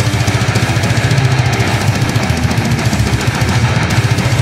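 Death metal played loud with no vocals: very fast, dense drumming at the bottom of the mix under distorted guitars.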